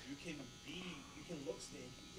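Soft, low conversational speech, too quiet to make out, over a faint steady electrical buzz.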